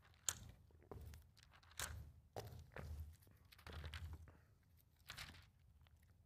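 Thin Bible pages being flipped through by hand: a run of faint, papery rustles about every half second to second, the sharpest just after the start.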